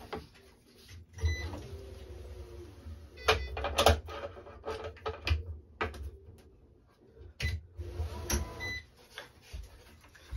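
Squash racket string being drawn through the frame and across the strings, a rubbing hiss about a second in and again near the end, with sharp clicks and knocks of the racket and string being handled on a stringing machine between them.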